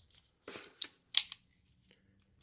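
A few light metallic clicks from a stainless Ruger GP100 revolver as it is worked in the hand. The cylinder is being rocked to show how little play there is in its lockup.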